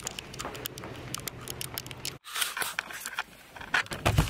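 Footsteps going down stairs with rustling and irregular light clicks from a camera carried by hand. The sound drops out for an instant about two seconds in, and then more scattered clicks and rustling follow.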